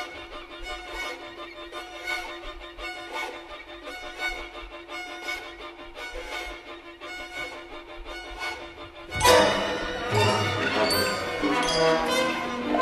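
Modern classical music with bowed strings: a quiet, sparse texture of high held notes and irregular short strokes. About nine seconds in, a sudden louder, denser passage breaks in, reaching down into the low register.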